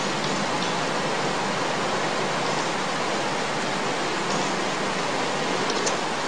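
Steady, even hiss with no other sound: the background noise of the narration microphone and recording.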